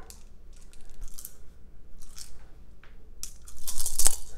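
Plastic gaming dice clicking together in the hand, a few scattered rattles, then shaken hard and thrown onto the tabletop near the end, a quick run of clicks as they tumble.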